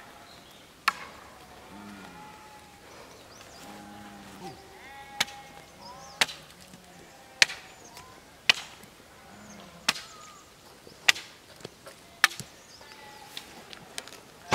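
A wooden stake is driven into the ground, giving sharp wooden knocks about once a second from a few seconds in. Sheep bleat in between.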